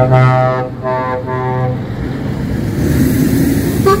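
Truck air horn sounding three blasts, the first the longest, over the diesel engine of a truck pulling past; after the blasts, about two seconds in, the engine and tyre noise carry on alone.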